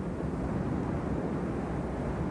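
A steady low rumble of noise with no distinct events or pitched tones.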